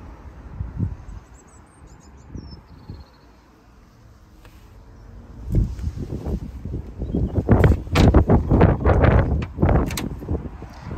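Handling and wind noise on a handheld camera microphone as it is carried out of a car: a few soft knocks at first, then loud rumbling and rough buffeting from about halfway on. Faint high chirps sound early on.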